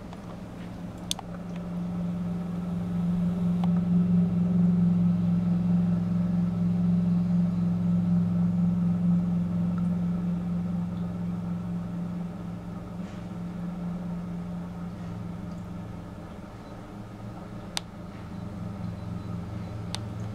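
A steady low mechanical hum that swells louder over several seconds and then slowly eases off, with a couple of faint clicks.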